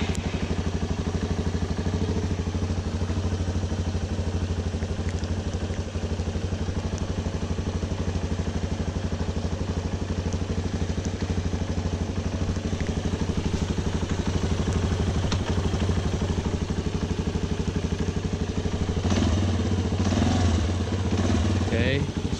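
Freshly rebuilt Yamaha Raptor 350 ATV's single-cylinder four-stroke engine running at a steady idle, on its first run since a complete rebuild.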